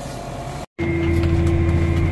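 Tractor running with the planter, heard from inside the cab: a steady low drone with a constant hum tone over it. It breaks off into a brief silence about two-thirds of a second in.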